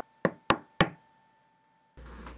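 Three quick knocks, about a quarter of a second apart.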